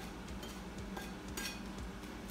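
A few light clinks of a metal spoon against a plate and a stainless steel pot while salt is added to the soup, the clearest about one and a half seconds in, over a steady low hum.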